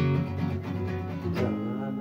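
Acoustic guitar being strummed, with a held sung note coming in about three-quarters of the way through.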